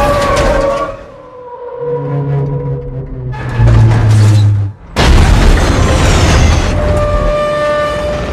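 Cinematic trailer soundtrack: a deep low drone swells for a few seconds, cuts out briefly about halfway through, then a heavy boom hits and the music carries on with sustained tones.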